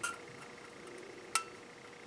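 Two light metallic clicks as a thin punched metal stove body is handled with a hand tool; the second, about halfway through, is sharper and rings briefly.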